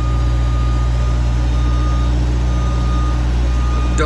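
Aerial boom lift's engine running steadily at close range, with a thin, steady high tone over it that fades out about halfway through.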